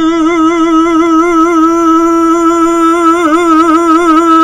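A man singing one long held note with steady vibrato, breaking into a brief wavering run about three seconds in before settling back on the note.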